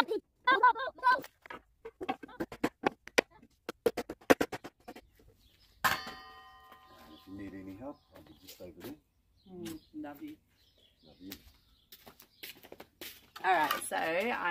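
Irregular sharp clicks and knocks for about five seconds, then a single ringing strike about six seconds in, followed by a few brief bits of voice.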